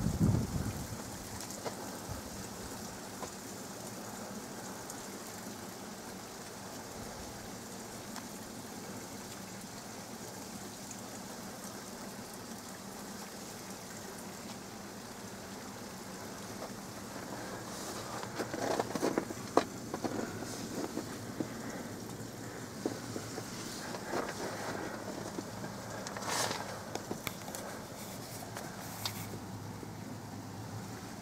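Steady rushing of river water at a dam, a constant even wash of noise. In the second half, scattered short crunches and clicks sound over it.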